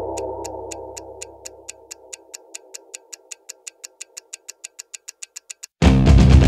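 A held, droning chord fades away over the first two seconds under a sharp clock-like ticking that speeds up to about five ticks a second. Near the end a loud stoner-metal band comes in all at once with fuzz guitars, bass and drums.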